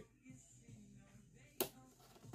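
A single sharp plastic click about one and a half seconds in, from a small toy or its packaging being handled by hand, over faint background music.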